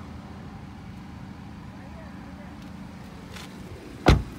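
Steady low mechanical hum with faint pitched lines in it, and a faint click about three and a half seconds in.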